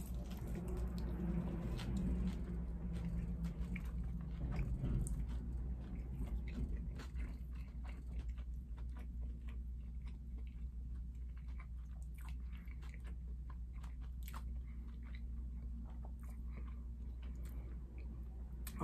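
A person biting into and chewing a KFC spicy crispy fried chicken sandwich: crunching of the crisp breading, loudest in the first few seconds, then quieter chewing with scattered small mouth clicks.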